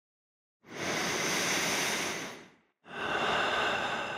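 Two soft rushes of airy noise, each swelling and fading over about two seconds, with a short silent gap between them.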